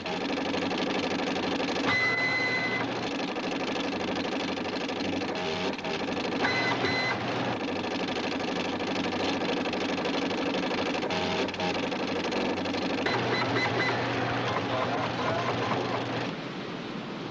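Computer sound effects: a fast, steady mechanical clatter like a teleprinter or line printer, joined three times by a high electronic beep.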